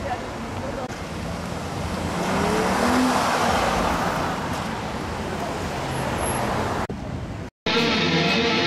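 Street traffic noise with a car pulling away, swelling about two seconds in, over faint background voices; it breaks off suddenly near the end.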